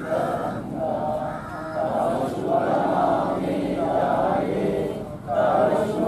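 A group of men singing an anthem together in unison, in long held notes, with a brief break about five seconds in.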